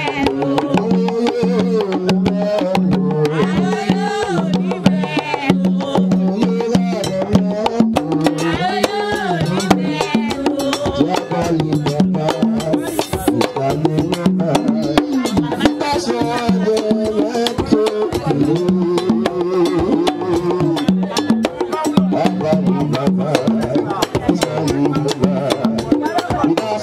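Haitian Vodou ceremonial music: fast, steady hand drumming with women's voices singing a chant over it.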